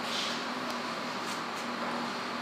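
Steady indoor room noise with a short hiss at the start and a few faint clicks, typical of a handheld camera's microphone picking up the room and its own handling.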